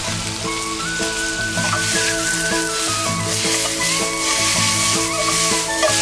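Chicken, onion and freshly added spring onions sizzling as they stir-fry in a hot wok, under background music of steady held notes.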